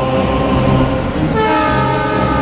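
A train running, with its horn sounding as a chord of several steady tones; a higher set of horn tones comes in about a second and a half in.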